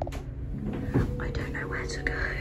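Hushed whispering, with a single thump about halfway through.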